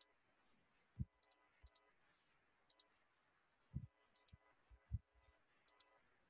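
Faint clicks of a computer mouse button, a handful spread through, each a quick double tick, with a few soft low thumps in between.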